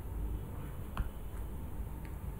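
Low steady background hum with a single short click about a second in.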